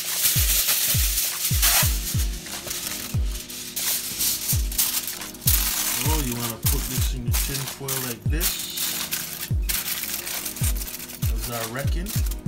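Aluminium foil crinkling and rustling as it is pulled and pressed down over a disposable foil baking pan. Background music with a steady bass-drum beat and a sung melody plays over it.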